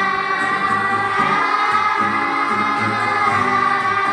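A children's choir singing a song together, with long held notes.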